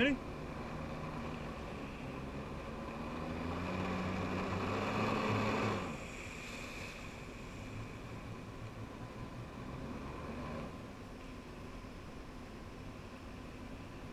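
Personal watercraft engine driving a Flyboard's water jet, with the rush of water. The engine's pitch and the rushing rise over a few seconds as the throttle is opened to push the rider up, then drop suddenly about six seconds in, and ease lower again near eleven seconds.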